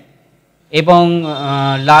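A man speaking Bengali: a short pause, then one long drawn-out syllable as he starts the word "Lalgola".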